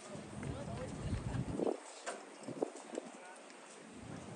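Distant shouts and calls from players and people around a soccer field. A low, uneven rumble on the microphone drops away a little under two seconds in, and there is one sharp knock about two and a half seconds in.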